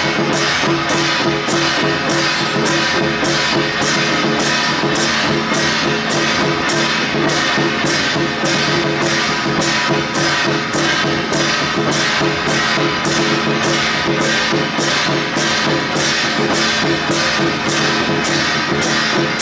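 Temple drum troupe beating large barrel drums together with hand cymbals: a steady, loud beat of about two strokes a second.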